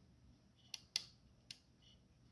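Waveform selector switch on a Behringer 112 Dual VCO eurorack module being flipped by hand: three short clicks, the middle one loudest, about a second in. The clicks are firm and crisp, as a good mechanical switch should sound.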